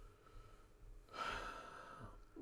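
A man's faint breath out, a sigh-like exhale starting about a second in and lasting under a second.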